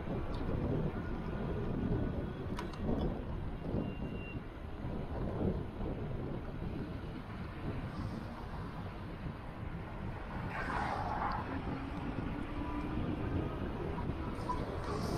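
City road traffic heard from a moving vehicle, with a steady low rumble of wind and road noise on the microphone. A brief hiss about ten and a half seconds in, and a faint low engine drone near the end.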